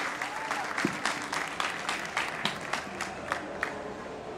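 Audience applauding at the end of a talk, the clapping thinning out to a few scattered claps near the end.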